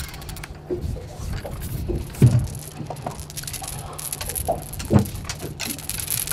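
Fishing reel being wound in on a boat, a run of small clicks over a steady low hum, with two short knocks about two and five seconds in as a small flatfish is brought up.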